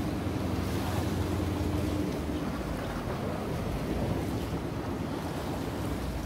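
Wind buffeting the microphone over sea water washing against seawall rocks, a steady rushing noise heaviest in the low end. A faint steady low hum sits under it and fades after about two seconds.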